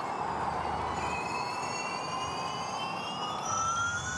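Gen2 Formula E race cars' electric motor and transmission whine, several pitched tones climbing slowly as the cars accelerate, over a steady hiss.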